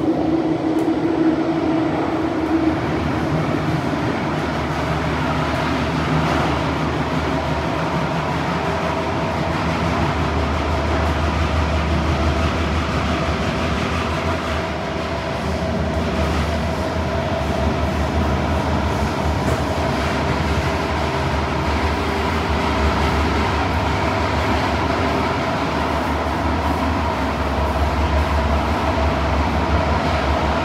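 Kawasaki Heavy Industries / CRRC Qingdao Sifang CT251 metro train running, heard inside the passenger car: a continuous low rumble of the running gear with steady humming tones over it. The rumble grows heavier about ten seconds in.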